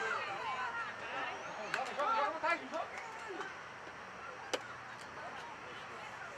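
Spectators and players shouting and cheering at a rugby match, loudest in the first three seconds, with a few sharp claps mixed in, then dying down to a quieter murmur of voices.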